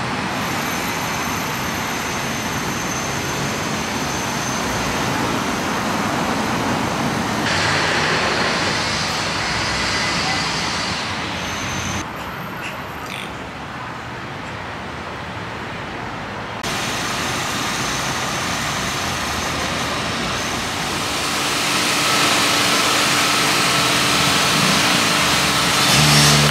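Steady road traffic noise from a nearby street. Its level and tone change abruptly a few times, at about a quarter, halfway and two-thirds through.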